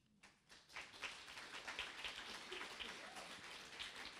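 A small audience applauding, the clapping starting about half a second in and holding steady.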